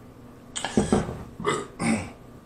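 A man burping after a long drink: one drawn-out burp about half a second in, followed by two shorter sounds.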